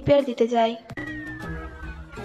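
A high-pitched, drawn-out vocal sound from the drama's own soundtrack, then a click about a second in and a thin tone slowly falling in pitch over soft background music.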